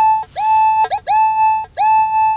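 Minelab CTX 3030 metal detector sounding its target tone as the coil is swept back and forth over a hole: about four clear beeps, each sliding up and then holding one steady pitch. The target reads 01.50, a reading the detectorist has learned comes from a rock in the hole rather than a find worth digging.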